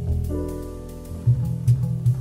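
Jazz music: a plucked bass line with light drum hits, and a chord held for about a second near the start.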